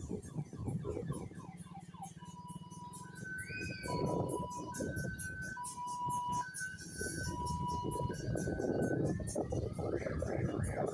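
Electronic sound effects from children's fairground rides: quickly repeating falling chirps at first, then long beeps alternating between a low and a higher note, siren-like, over a crowd and music murmur.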